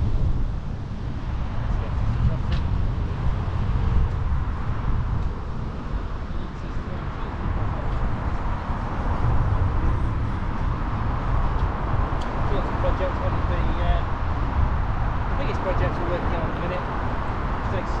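Steady road-traffic noise from cars on a busy arterial road, heard from a moving bicycle, with a continuous low rumble of wind and road noise at the microphone.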